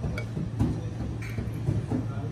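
A metal fork clinking and scraping on a china plate a few times over a steady low room hum.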